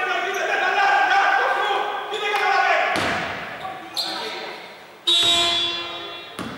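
Voices on a basketball court during a stoppage, with a couple of ball bounces. About five seconds in, an arena horn sounds suddenly and fades over about a second, the kind of signal used to call a substitution.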